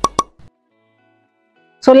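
Two quick pitched pops a fraction of a second apart, typical of an edited-in transition sound effect, followed by dead silence and then a spoken word near the end.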